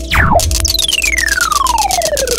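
Cartoon sound effects for parts snapping together: a quick downward zip, then a long smooth falling whistle-like slide from high to low, with the next slide starting near the end. A fast, even ticking and a faint held tone run underneath.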